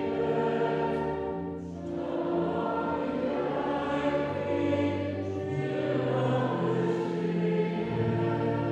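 Slow church hymn sung by voices in long held notes, the pitch moving to a new note every second or so.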